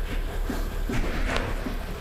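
Hyundai G4KD 2.0-litre four-cylinder petrol engine idling steadily just after starting. The engine has been freshly rebuilt with a sleeved block and new pistons, which cured its piston knock.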